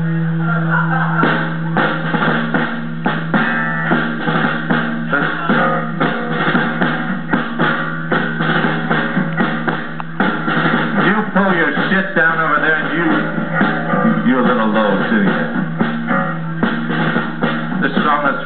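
Live rock band playing, with electric guitar and a drum kit: the drums come in about a second in with a regular beat over a held low note.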